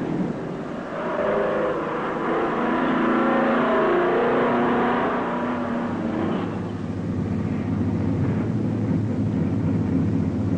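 Diesel engine of a cab-over tractor-trailer running. Its pitch wavers up and down for the first several seconds, then settles into a steady low drone from about six and a half seconds in.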